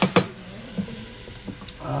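Mussels cooking in a wok on a hot burner, with a light sizzle. A sharp metallic clank against the wok comes just after the start, followed by a few faint ticks as the wok is stirred and covered.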